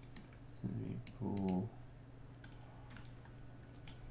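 Computer mouse and keyboard clicks: a handful of sharp single clicks spaced irregularly, over a low steady electrical hum.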